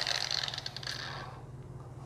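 Bosch GWX 125 S X-LOCK 5-inch variable-speed angle grinder spinning down, its motor whine fading away over about a second and a half until only a faint low hum is left.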